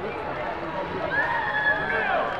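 Many voices talking and calling out at once, with one voice rising into a long, held shout over the last second.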